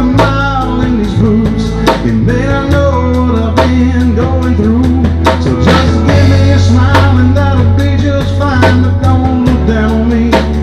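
Live country band playing: electric guitar over a drum-kit beat and a bass line.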